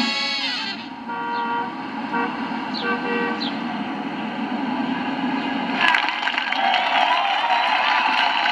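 Street traffic noise heard from a television, with several short car-horn toots, then from about six seconds in a crowd of voices.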